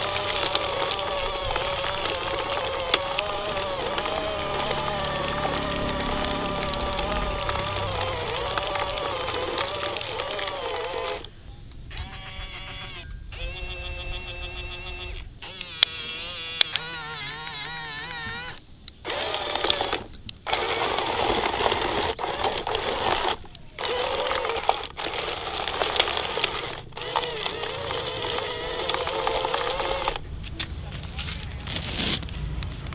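Small electric motors of a remote-control toy excavator whining as it works, the pitch wavering and shifting as the boom, arm and tracks move. The sound changes abruptly several times.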